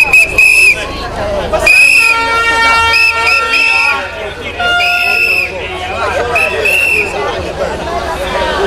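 Loud, shrill whistle blasts blown again and again by marchers, about eight short blasts, some in quick succession, over crowd chatter. A held horn-like note sounds for about two seconds near the middle.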